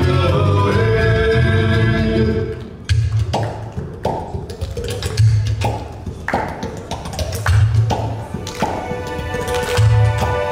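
Caucasian folk dance music. About two and a half seconds in, the full arrangement drops to a sparse break: a deep drum beat roughly every two seconds and chords under sharp handclaps. The fuller music builds back near the end.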